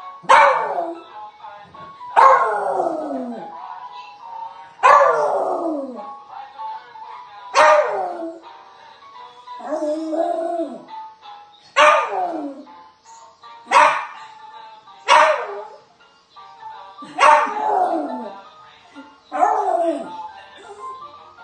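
A small dog howling along to music: about nine loud yowls, each starting suddenly and sliding down in pitch over about a second, coming every two seconds or so.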